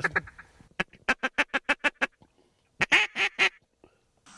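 Duck quacking: a quick run of about a dozen short quacks, then after a pause a louder run of five.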